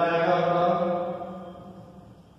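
A man's voice drawing out one long vowel at a steady pitch, fading away over the second second.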